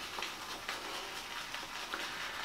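Silvertip badger shaving brush being swirled on a hard shaving soap to load it: a faint, soft scrubbing with a few light ticks.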